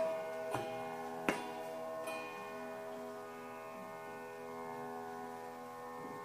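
Instrumental opening of a song: a steady drone of held notes, with a few ringing struck notes in the first second and a half, after which only the drone goes on.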